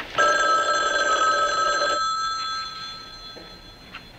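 Telephone bell ringing: one ring of about two seconds, then the bell fading out.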